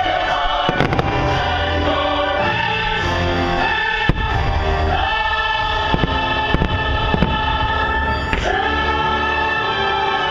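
Choral and orchestral fireworks-show music, with firework bangs cracking through it about six times, the sharpest about four seconds in.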